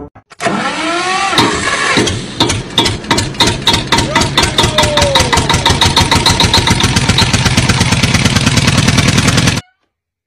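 An engine starting and running, its beat quickening steadily until it cuts off abruptly near the end. A few rising-and-falling tones sound over it in the first couple of seconds.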